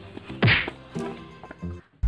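A single loud whack about half a second in, over quiet background music that drops out just before the end.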